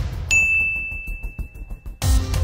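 A bright synthesized ding from a TV channel's logo ident, struck about a third of a second in and held as one steady high tone, over low rumbling bass hits.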